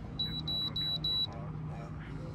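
Handheld Innova 3011 OBD2 code reader beeping four times in quick succession, short high-pitched beeps, as it finishes re-reading the car's stored trouble code.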